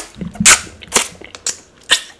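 Close-miked eating sounds from a grilled tilapia being pulled apart by hand and eaten: sharp crackles and snaps about every half second, the loudest about half a second in.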